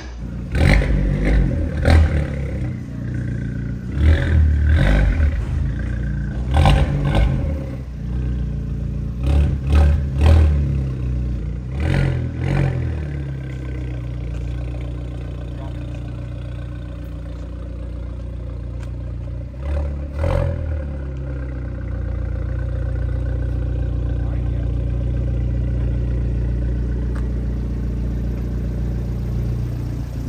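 Fiat 124 Spider Abarth's turbocharged 1.4 L MultiAir four-cylinder engine pulling hard in repeated surges for the first dozen seconds, with short sharp bursts between pulls. It then settles to a steady drone, with one more brief surge a little before the middle.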